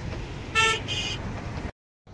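A vehicle horn toots twice, two short honks about half a second apart, over a steady low wind rumble on the microphone. The sound cuts off abruptly near the end.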